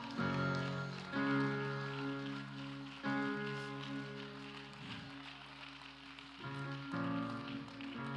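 Soft sustained chords played on a stage keyboard, each held for a second or more before moving to the next.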